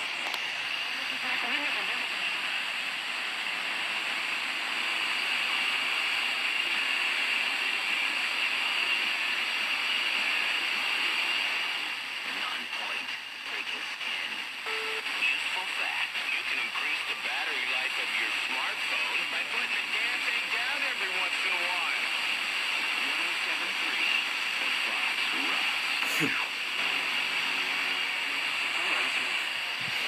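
FM radio tuned to 107.3 MHz, one channel off a strong station on 107.1: steady hiss with the station's programme breaking through distorted underneath. It is adjacent-channel spill from 107.1, which the owner takes as a sign that the radio's tuning is poorly calibrated.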